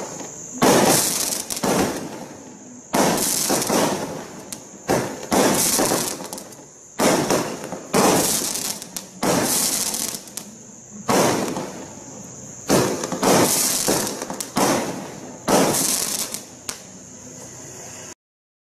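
Benwell 'Thundering Coconuts' 13-shot firework cake firing shot after shot, a dozen or so sudden bangs at irregular gaps of one to two seconds, each trailing off in a hissing crackle over about a second.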